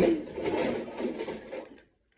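Rustling and scraping handling noise close to the microphone, with a few small knocks, dying away to silence near the end.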